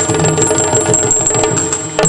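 Yakshagana instrumental accompaniment: a steady held drone with repeated maddale drum strokes and a thin, high bell-like ringing held over it.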